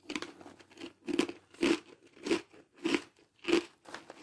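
A person chewing a mouthful of crunchy cheddar snack mix with pretzel pieces: a steady run of about seven crunches, one every half second or so.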